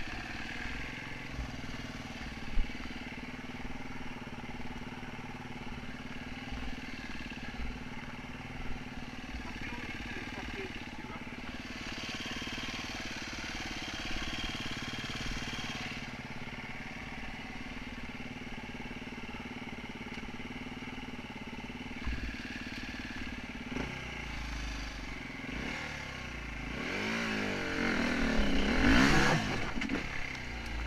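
Enduro dirt bike engine idling steadily, with a single knock early on, then revved up and down several times near the end.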